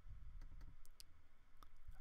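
A few faint, sharp computer mouse clicks, about five in the first second and a half, over a low steady room hum.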